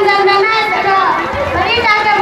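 Speech only: a high-pitched voice speaking in long, drawn-out syllables with gliding pitch, through a stage microphone.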